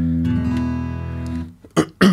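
Acoustic guitar: a bass note plucked with the thumb, with the rest of the chord entering just after it, ringing together and dying away about a second and a half in. A short sharp click follows near the end.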